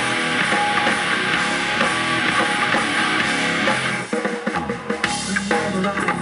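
Live progressive metal band playing loud on electric guitars, bass and drum kit. About four seconds in, the dense wash of guitars and cymbals drops away to a sparser passage with a few separate drum hits before the band fills back in.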